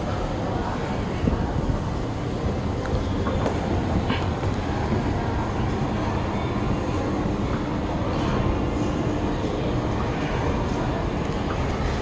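Steady low rumble and hum of a busy shopping mall's indoor ambience, with faint background voices.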